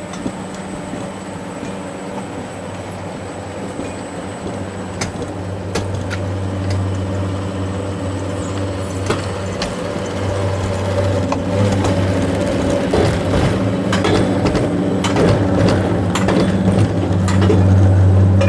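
Mountain coaster sled being hauled up the climbing section of its rail: a steady mechanical hum that grows louder, with scattered clicks and clatter from the sled and track that come more often from about a third of the way in.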